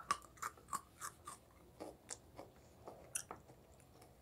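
A child chewing a bite of chocolate-covered pretzel close to the microphone: about a dozen short, irregular crunches.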